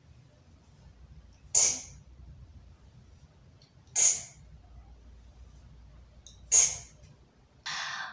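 A woman saying the phonics sound /t/ three times, each a short breathy burst, about two and a half seconds apart.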